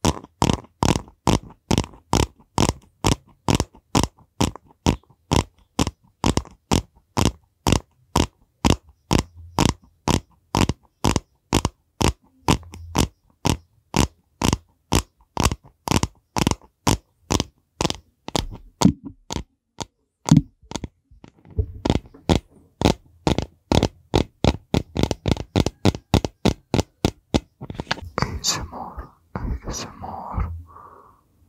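Sharp, evenly spaced clicks from fingers working a yellow plastic case close to a microphone, about three a second, with a short pause about two-thirds of the way through. Near the end the clicks give way to a denser, breathy rustle very close to the microphone.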